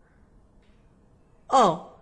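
Near silence, then about one and a half seconds in a single short vocal sound from a woman's voice, falling in pitch.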